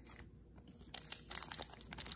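Yu-Gi-Oh booster pack wrapper crinkling as it is picked up and handled, a run of quick crackles starting about a second in.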